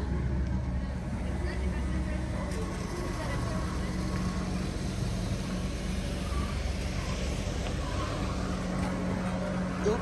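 Floor scrubbers running, among them a Nilfisk Liberty robotic scrubber: a steady low machine drone with a hum that fades in the middle and returns near the end.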